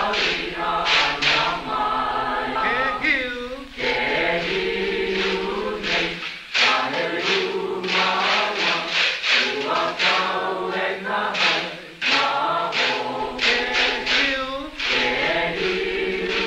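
A group of voices chanting a Hawaiian mele in unison, with held, wavering notes. The chant breaks off briefly about three and a half, six and twelve seconds in.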